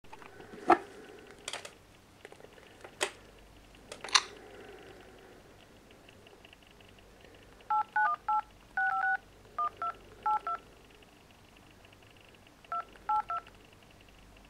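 A few sharp clicks and knocks in the first four seconds. Then an iPhone 3GS dial pad plays DTMF keypad tones as a phone number is keyed in: about a dozen short two-note beeps in uneven bunches, one held a little longer.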